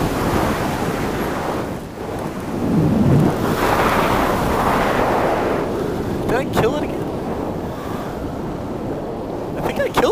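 Wind rushing over the microphone in flight, rising and falling in gusts and loudest a little before the middle.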